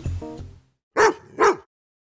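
Background music ends, then a dog barks twice, about half a second apart.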